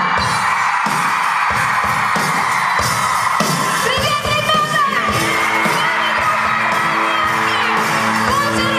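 Live pop-rock band playing loudly on stage: drum kit, electric guitars and keyboards, with a female voice singing over it from about halfway through.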